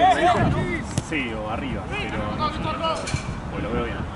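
Football players calling out to each other across the pitch, with a single sharp thud of the ball being kicked about a second in.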